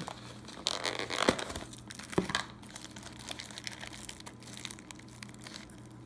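Thin plastic packaging of sliced deli meat crinkling and rustling as it is handled and opened, with two sharp clicks about one and two seconds in.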